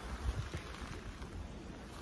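Wind on the microphone: a low, unsteady rumble over a faint even hiss.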